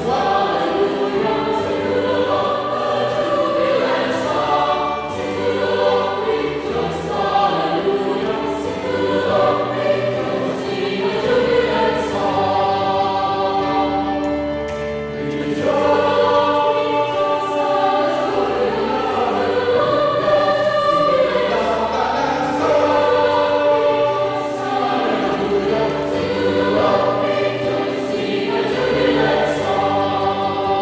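Mixed choir of men's and women's voices singing a piece in parts, with electronic keyboard accompaniment. The singing is sustained, with a short dip in loudness about halfway through.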